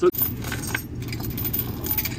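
Metal chain clinking and rattling as a hand-operated chain winch is worked, with a few sharp clicks over a steady low hum.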